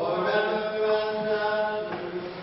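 Voices chanting in long, held notes, a sung liturgical chant following a sermon.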